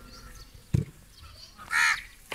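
A crow caws once near the end, a single short harsh call. There is also a brief knock a little under a second in.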